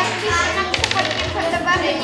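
A pair of dice rolled onto a table: a quick run of clattering clicks about a second in, over children's voices and background music.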